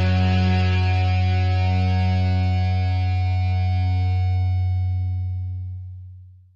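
Final chord of a rock song, held on distorted electric guitar over a strong low bass note and ringing out. Its higher notes die away first, and the whole chord fades out near the end.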